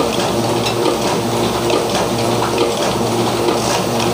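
Small two-colour offset printing press running at a steady pace, its inking rollers turning, giving an even mechanical hum.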